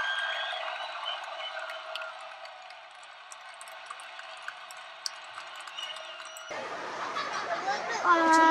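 Faint open-air ambience with distant, indistinct voices and a few soft ticks. The sound grows fuller and louder near the end.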